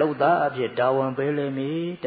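A Buddhist monk's voice intoning a recitation in a chanting tone, with drawn-out held pitches rather than ordinary speech.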